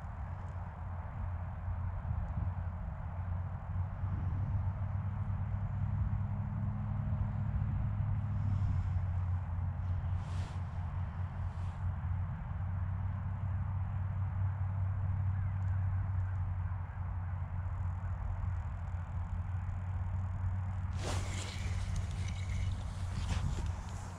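A steady low hum throughout. In the last few seconds comes rustling and handling noise as a small perch is hauled up through the ice hole by hand.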